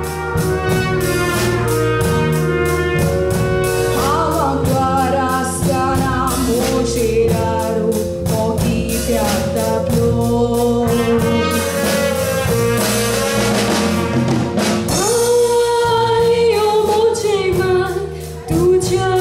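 A woman singing a Konkani tiatr song over band accompaniment with a steady beat.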